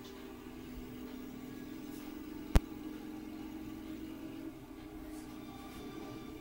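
A steady engine hum from an animated film's soundtrack, played through a television's speaker across a room, with a single sharp click about two and a half seconds in.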